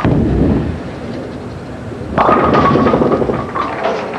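Bowling ball dropping onto the lane at release with a thud and rolling down the wood, then crashing into the pins about two seconds in for a strike. The crash is followed by a clatter of pins.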